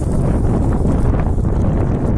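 Wind buffeting the phone's microphone: a loud, fluctuating low rumble of noise.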